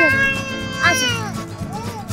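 A high-pitched drawn-out "ooh" call that slowly falls in pitch, then a second, shorter falling call about a second in and a softer wavering one near the end, over background music.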